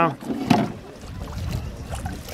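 A single sharp knock about half a second in, then a low, steady rumble of wind on the microphone.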